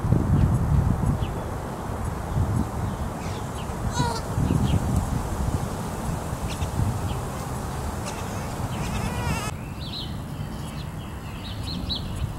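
Outdoor yard ambience: short high bird chirps and a couple of quick trilling calls over a steady, uneven low rumble. The background changes abruptly about two seconds before the end.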